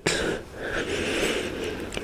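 A person's breath close to the microphone: a long breath between phrases, hissy and without voice, dipping briefly about half a second in.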